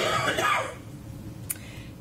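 A person coughs once, a short noisy burst in the first second, followed by quieter room sound and a single sharp click about one and a half seconds in.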